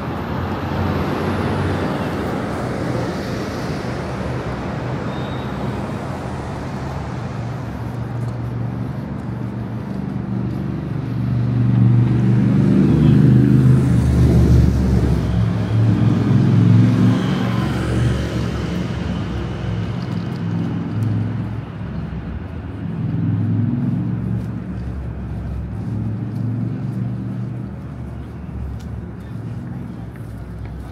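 City street traffic: cars and buses driving past, with a low engine rumble from a passing heavy vehicle loudest about twelve to seventeen seconds in.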